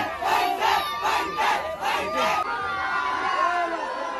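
A large crowd of fans shouting and chanting in rhythm, about two to three shouts a second, easing to a looser mix of voices about two and a half seconds in.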